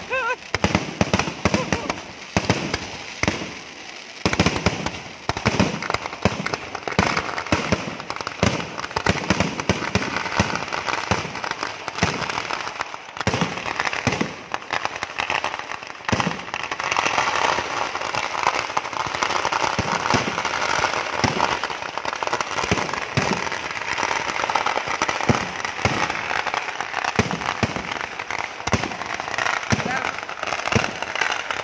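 Firework display: rapid, irregular strings of firecracker bangs, loud throughout. From about halfway through they merge into a dense, continuous crackling barrage.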